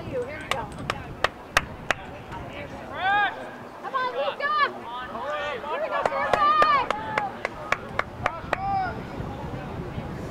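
Voices calling and shouting across an open field in short rising-and-falling cries, loudest about three seconds in and again around six to seven seconds, with a dozen or more sharp clicks scattered irregularly through.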